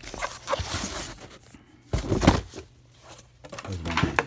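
Cardboard boxes being handled: rustling and scraping of cardboard for about a second, then a louder low thump about halfway through.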